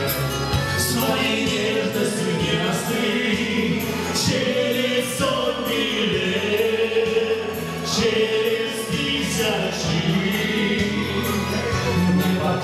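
Live wedding-band performance of a Russian song: a man sings the lead into a microphone over amplified band accompaniment with a steady beat.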